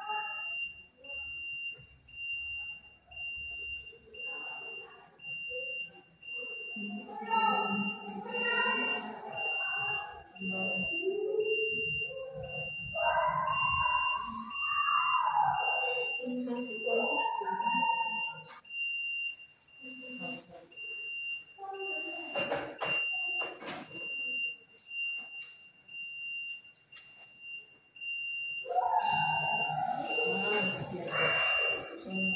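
A steady high-pitched electronic tone sounds throughout. Over it come intermittent voices, with long rising-and-falling vocal sounds around the middle and a few short sharp ones later.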